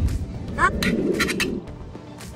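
A metal spatula scraping and clinking against a metal pizza pan as a slice of pizza is pried up, with a knock at the start and the scraping dying away after about a second and a half. Music plays underneath.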